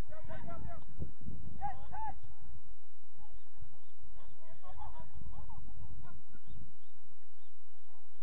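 Distant shouts of footballers calling during play, a few short calls across the field. Wind rumbles on the microphone throughout.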